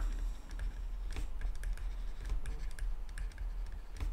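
A stylus writing on a tablet: a string of small, irregular taps and clicks as it strokes out handwriting.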